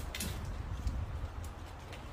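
A few faint clicks of a small metal drop-in T-nut and screw being handled and turned between the fingers, over a low steady rumble.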